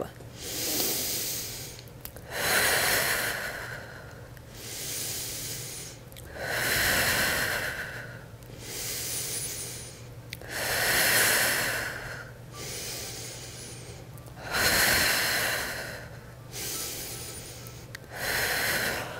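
A woman's slow, deep, paced breathing, close to a body-worn microphone. Softer and louder breaths alternate, about four full breath cycles, each lasting roughly four seconds.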